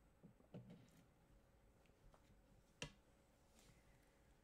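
Near silence: room tone with a faint steady hum, a couple of soft low sounds about half a second in, and a single faint click near three seconds in.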